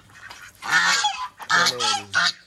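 Large ducks making a racket with loud, harsh honking quacks in two bursts, the first about half a second in and the second near the end. They are calling from a crate, wanting to be let out.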